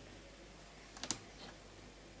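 Quiet room tone broken by a quick cluster of sharp clicks about a second in, one crisp click louder than the rest.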